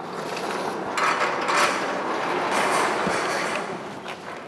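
Metal hardware rattling and grinding in a sustained, noisy run that swells about a second in and eases off near the end, like a metal gate or shutter mechanism in motion.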